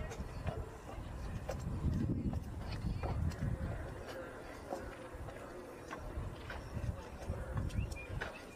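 Hoofbeats of a horse cantering on a show-jumping course, heard as scattered dull clicks over an uneven low rumble.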